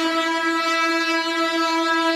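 A steady, horn-like tone held on one pitch, rich in overtones.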